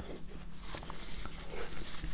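Soft, wet chewing and mouth sounds of a person eating juicy fruit, with small faint clicks.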